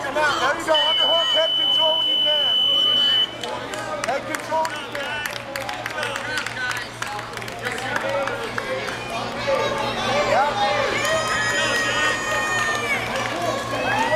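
Spectators talking and calling out around a grappling match. A long, steady, high-pitched electronic-sounding tone starts about a second in and lasts about two and a half seconds, louder than the crowd. A second steady tone with several pitches sounds near the end.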